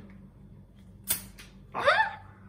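Pull-ring crown cap being pulled off a glass bottle of carbonated Bundaberg ginger beer: a brief sharp hiss-pop of escaping gas about a second in, fading quickly. Near the end comes a short rising vocal sound.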